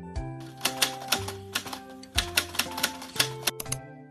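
A typing sound effect, a rapid run of clicks lasting about three seconds, over light background music.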